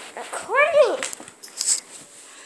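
A single short high call that rises and falls in pitch, then scratchy handling noise as a finger rubs over the phone's microphone.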